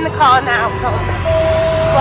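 A man's voice calling out in English over a low, continuous rumbling noise, then a steady single held tone over the last part that cuts off suddenly.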